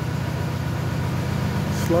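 Borehole drilling rig's engine running steadily with a fast, even pulse, while casing is lowered into the hole.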